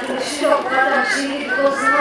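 A girl speaking into a handheld microphone.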